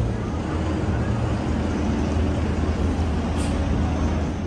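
Street traffic with the steady low hum of a bus engine running close by, over the general noise of the road.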